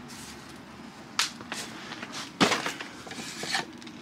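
Cardboard boxes and the things in them being handled and rummaged through: a handful of scattered knocks and scrapes, the loudest about two and a half seconds in.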